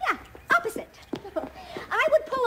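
A few short, animal-like vocal noises from a puppet mule that balks as it is pulled by its reins.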